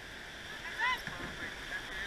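Shallow surf washing steadily around a surfboat and the wading crew's legs, with a short distant shout just under a second in.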